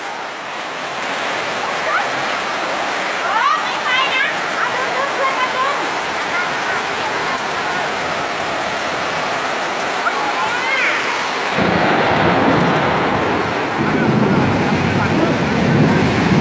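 Steady rush of fast-flowing floodwater across a road, with rain, and short shouts from the people in the water. About twelve seconds in, a deeper, louder rumble joins the rush.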